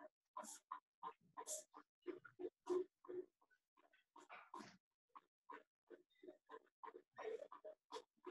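Faint rubbing and squeaking strokes of a whiteboard being wiped with an eraser and then written on with a marker, in short quick bursts, two or three a second.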